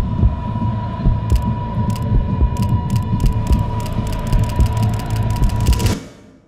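Cinematic trailer sound design: a deep, pulsing bass under a steady high ringing tone, with sharp ticks starting about a second in and coming faster and faster, building tension until it all drops away at the end.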